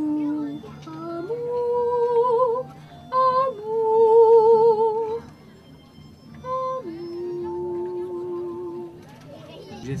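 A woman singing a slow line of long held notes with a wide vibrato, stepping up and down between them, ending on a lower note held for about two seconds.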